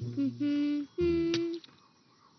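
A cartoon character humming a short tune: two held notes, the second a little higher, each lasting under a second.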